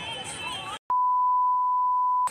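A steady 1 kHz test-tone beep, the tone that goes with a TV colour-bars test card, starting with a click about a second in. Before it there is only faint background sound.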